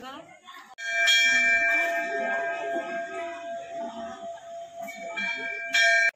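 Metal temple bell struck about a second in and ringing on with a clear, slowly fading tone, struck again near the end.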